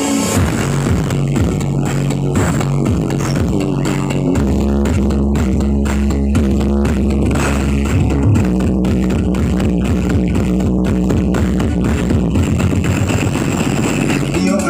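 Loud music with heavy bass played through a truck-mounted sound system stacked with subwoofer cabinets. A deep held bass note comes in about four seconds in and drops away about four seconds later.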